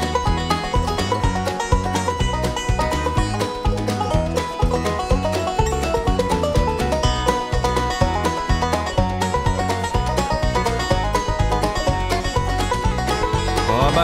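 Banjo solo of fast, rolling picked notes over a country band's steady bass and drums.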